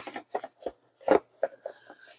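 Cardboard tablet box being handled and moved: a series of short scrapes and rustles of card against card and cloth.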